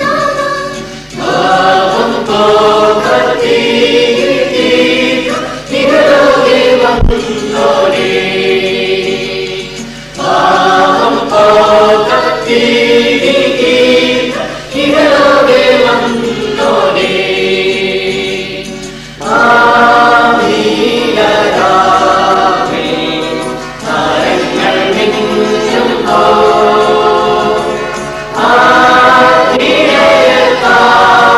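Church choir of children and adults singing a Malayalam Christmas carol in phrases a few seconds long, with short breaks between them.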